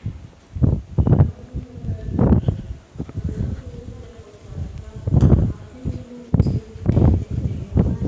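A diesel shunting locomotive moving a rake of passenger cars slowly past, with a low buzz and irregular heavy low thumps every second or so.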